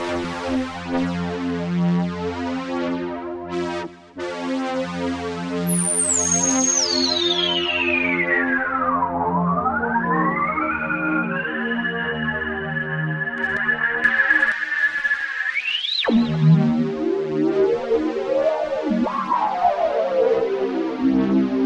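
Waldorf Microwave XTK wavetable synthesizer sounding a held chord while its knobs are turned. A high whistling tone steps down in pitch to a low point about halfway through, then climbs and holds. It rises sharply and cuts off about three-quarters of the way in, and wavering, gliding tones follow.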